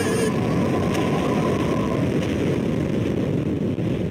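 Fire sound effect: a loud, dense, low rumble of burning with a crackling texture.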